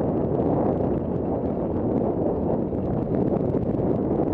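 Steady wind rush on a helmet-mounted camera's microphone during a fast descent of a dirt singletrack, with faint ticks and rattles from the tyres over the trail.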